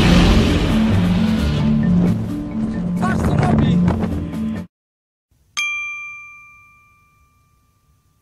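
Background music with a steady repeating bass line that stops about two-thirds of the way in. After a moment of silence, a single bell-like ding rings out and fades away over about two seconds.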